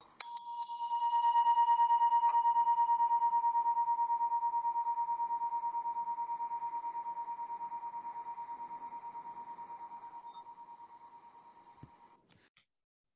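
A small hand-held brass meditation chime struck once, giving a clear ringing tone with bright overtones that fades slowly over about twelve seconds with a fast, even wobble. It is rung to open the silent meditation.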